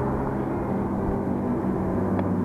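Engine noise of vehicles being driven fast on a main road: a steady drone with several held engine tones, which the rider likens to a race circuit.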